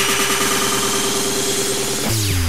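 Hard trance club mix at a build-up: a rapid drum roll that keeps speeding up, over held synth tones.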